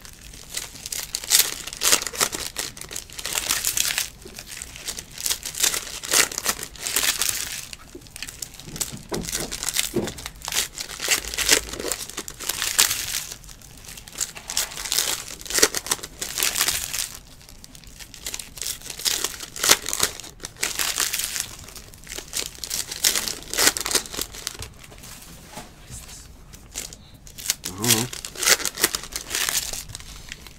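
Foil wrappers of Panini Select basketball card packs crinkling and tearing as they are ripped open and handled, in repeated bursts of crackle every few seconds.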